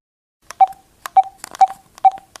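Telephone keypad tones as a number is dialed: a string of short beeps, each with a click, about two a second.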